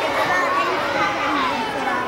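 Many children talking at once in a large hall: a steady babble of young voices overlapping, with no single speaker standing out.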